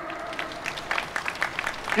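Crowd applauding: a dense patter of many hand claps.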